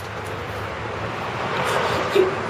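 A passing motor vehicle: a steady rush of noise that swells louder toward the end.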